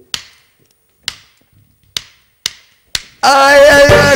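A drummer's count-in of five sharp drumstick clicks, two spaced out and then three quicker. About three seconds in, a live reggae band of drums, bass, guitars and keyboard comes in together with a sung vocal.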